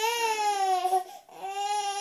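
A toddler crying in two long, high wails with a short break between them.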